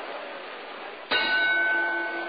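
Boxing ring bell struck once about a second in, its ringing tone holding and slowly fading, marking the round. Before it, a steady hiss of background noise.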